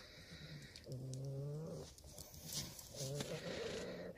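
Horse nickering softly: two low, drawn-out calls, one about a second in and one near the end.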